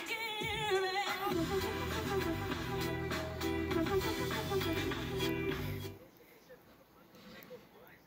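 Music playing from a television: a singer's voice with vibrato for about the first second, then music with a steady bass line, which stops about six seconds in, leaving only faint room noise.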